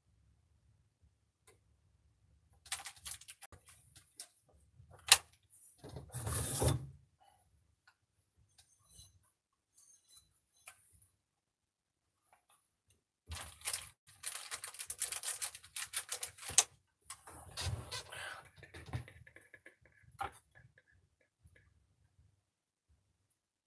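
Irregular bursts of crinkling and rustling as a small plastic bag of hardware is opened and its parts handled, with a sharp click about five seconds in and the longest stretch of rustling in the second half.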